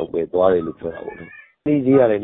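Only speech: a man talking in Burmese, with a short pause a little after the middle.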